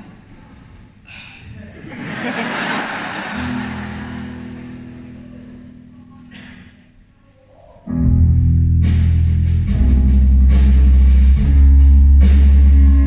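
Rock band with a string orchestra starting a song live: a swell of crowd noise fades, low notes are held, then about eight seconds in the full band comes in loud with drums, bass and guitars.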